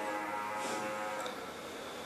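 A man's low hummed 'mmm', held steady for about a second and then fading into faint room tone.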